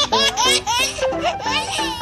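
Baby laughing in a run of short, pitch-bending bursts over background music.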